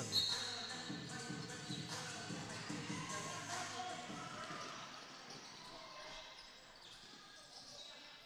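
Lacrosse arena play sounds: a short referee's whistle blast right at the start for the faceoff, then scattered knocks of sticks, ball and players' feet on the dry concrete floor over a general hall noise that grows quieter toward the end.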